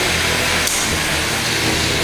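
Spinning weapon motors of 3 lb combat robots whirring steadily, with a faint tick about two-thirds of a second in.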